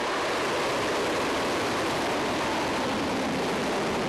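A missile's rocket motor at liftoff: a steady, even rushing noise with no breaks.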